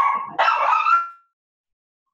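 Excited pet dogs whining and yipping in long, high-pitched cries, with a short break and a slight rise in pitch at the end. The sound cuts off suddenly about a second in as the microphone is muted.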